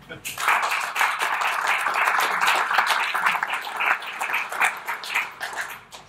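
An audience applauding, a dense patter of many hands clapping that begins just after the start and tapers off near the end.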